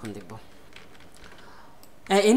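Faint, scattered keystrokes on a computer keyboard, after a voice trails off in the first half-second.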